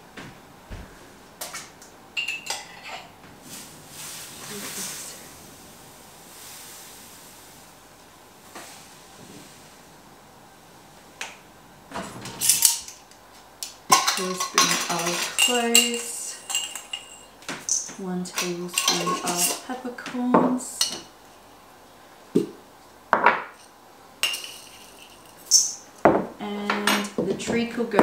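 Kitchenware being handled: a spoon clinks against a mug and jars knock on a wooden bench. About halfway through, dry ingredients are shaken from a small glass jar into a stainless-steel mixing bowl, clattering against the metal.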